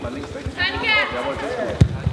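Karate kumite bout on a hall floor: bare feet thudding and shuffling, a high-pitched shout a little over half a second in, and one sharp smack just before the end.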